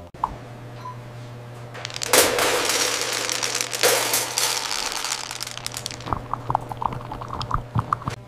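Dry feed pellets pouring from an automated feeder into a stainless steel tray: a loud rattling rush from about two seconds in that tails off into scattered clicks near the end, over a low steady hum.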